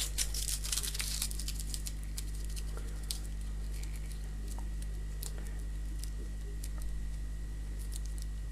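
Aluminium foil crinkling as small foil balls are pushed into a plastic BIC pen barrel: dense crackling for about the first second and a half, then scattered light clicks and ticks as the foil and plastic are handled.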